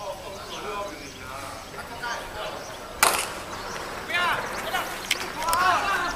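A softball bat hitting the ball: one sharp crack about three seconds in, the loudest sound here, followed by voices shouting.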